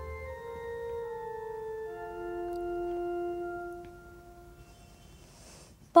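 Soft organ music: sustained chords that change slowly, fading away about four seconds in.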